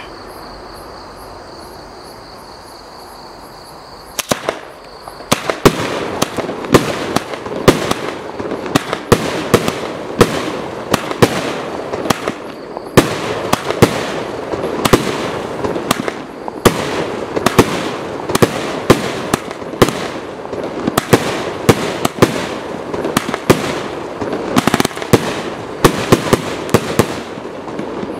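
PXB202C multi-shot firework cake firing. A couple of sharp bangs come about four seconds in, then from about five seconds a rapid, steady string of loud reports, about two a second, each shot bursting in the air.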